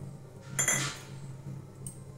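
A stainless steel bowl clinks once against a stone counter as it is set down about half a second in, ringing briefly. A faint low hum runs underneath.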